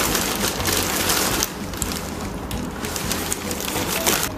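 Plastic packaging bag rustling and crinkling as it is handled, densest for the first second and a half, then sparser crackles.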